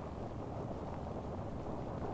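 Steady, even rumble of a Saturn I (C-1) rocket's eight first-stage engines as the vehicle climbs in flight.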